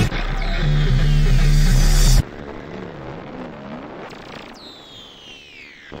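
Background music that cuts off suddenly about two seconds in, followed by a quieter recorded race-car engine sound, its pitch rising and falling, with a high whine that falls in pitch near the end.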